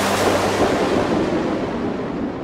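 A sudden crash-like wash of noise in the synth-pop track, breaking in as the held synth chords stop and dying slowly away over about two seconds.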